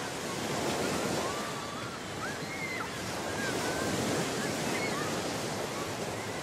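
Ocean surf breaking and washing up a sandy beach, a steady rushing roar of rough waves.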